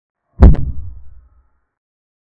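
A single deep impact sound effect: a sharp crack just under half a second in, then a low boom that dies away over about a second.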